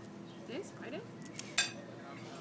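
A single sharp clink of tableware about one and a half seconds in, over faint background voices and a few short rising chirps.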